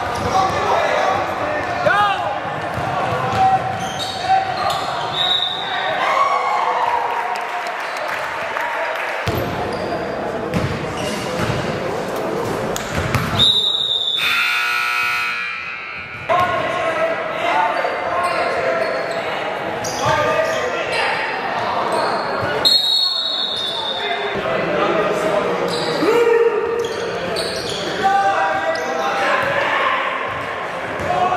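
Basketball game in a gym: a ball dribbling on the hardwood floor and players' and spectators' voices, echoing in the large hall. A sharp, high referee's whistle sounds about halfway through, and again a few seconds later.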